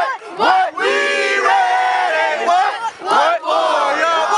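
A huddle of young football players shouting a chant together in unison, a string of loud, drawn-out group yells with brief breaks for breath.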